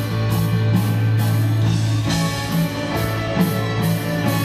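Live rock band playing an instrumental passage: electric guitar over a steady held low bass note, with drums and cymbals keeping an even beat of about two strokes a second.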